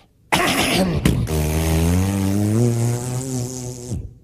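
Propeller airplane engine starting up. A sudden loud burst of noise with a click comes first, then a steady engine note that climbs slowly in pitch as it spools up.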